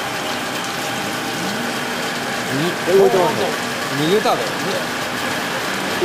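Steady running noise of fish-processing machinery, with a man's voice speaking briefly about halfway through.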